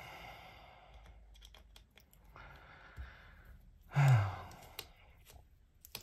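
A man breathing out and sighing, with a short voiced sigh about four seconds in that falls in pitch. Faint small metallic clicks come from a precision screwdriver working the knife's tiny screws.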